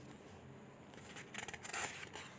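Faint room noise with a brief, soft rustle about one and a half seconds in.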